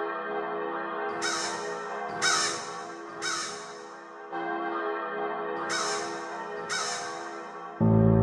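Corvid cawing over a sustained ambient synth drone: three caws about a second apart, a short gap, then two more. Near the end a louder, deeper chord comes in.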